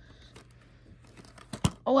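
A plastic Blu-ray case being handled with faint small clicks, then snapping open with one sharp click about a second and a half in.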